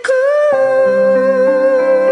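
A woman's voice holds one long sung note without words, over the sustained keyboard chords of a karaoke backing track that come in about half a second in.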